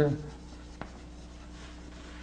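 Chalk writing on a blackboard: faint scratching of the chalk, with one sharp tap just under a second in.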